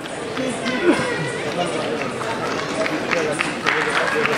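Several people talking indistinctly over a murmur of crowd noise, with scattered short sharp sounds in the second half.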